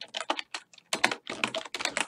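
Typing on a computer keyboard: a quick run of separate keystrokes, with a short pause just under a second in.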